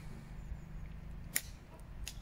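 A 6-iron striking a golf ball on a full swing: one sharp click about two-thirds of the way through, over faint steady background noise.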